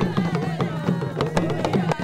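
Several hand drums beaten in a quick rhythm, sharp strokes over a steady low hum, with voices wavering in pitch over the drumming.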